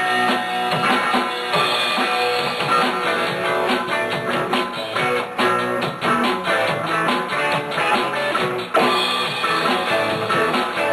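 A rock band playing live in a small rehearsal room: electric guitars and bass over a drum kit, an instrumental passage with no singing.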